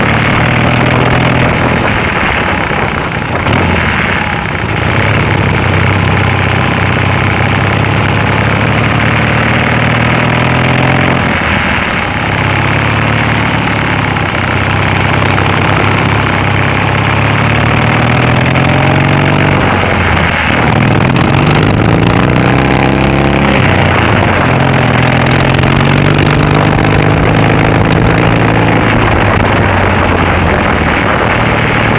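Triumph Bonneville parallel-twin engine under way, heard from on the bike. Its pitch rises as it pulls and drops back about three times, at roughly 4, 12 and 20 seconds in.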